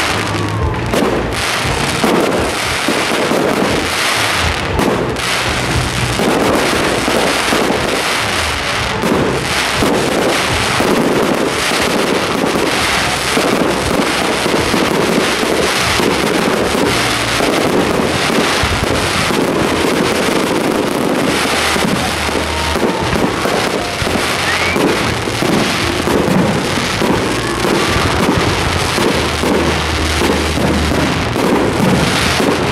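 Aerial fireworks display: a dense, continuous barrage of loud bangs from shells bursting in quick succession.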